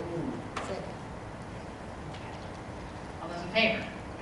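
Faint speech away from the microphone over quiet room tone, with a single click in the first second and a short spoken phrase near the end.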